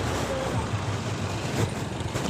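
Steady low hum of a motor vehicle engine running, with road noise.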